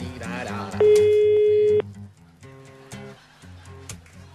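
Italian telephone ringback tone over a phone line: one steady beep about a second long, starting about a second in, over background music. The call is ringing out, not yet answered.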